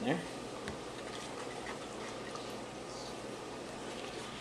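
Steady, quiet room noise with a few faint scattered taps and clicks.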